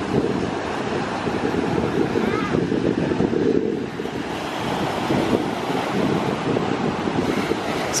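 Wind buffeting an uncovered microphone, a rough, gusty rumble, over the wash of small waves breaking on the shore.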